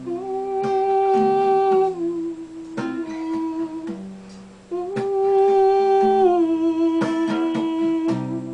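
A woman hums a wordless melody over a strummed acoustic guitar: two phrases of long held notes, each stepping down in pitch near its end.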